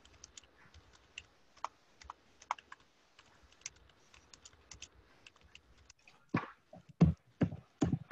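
Typing on a computer keyboard: scattered light key clicks, entering meeting login details, then a few louder thumps near the end.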